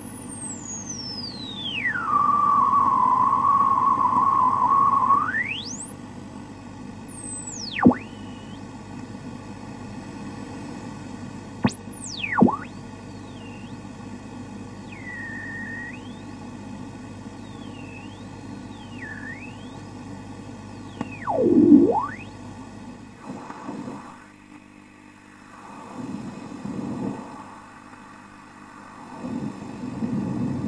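Radio static: a steady hiss with interference whistles that glide in pitch. One long whistle drops from very high, holds steady for a few seconds, then rises. Quick swooping whistles follow, and near the end the hiss thins and turns uneven.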